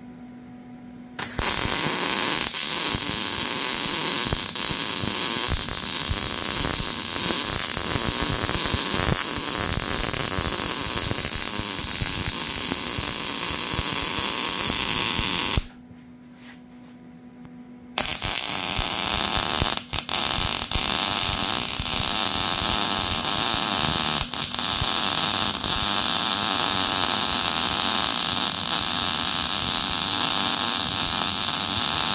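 Wire-feed welder arc welding a steel support bracket onto a steel lawn-mower deck: a steady, loud crackle that starts about a second in, stops for about two seconds around the middle, then starts again as a second bead.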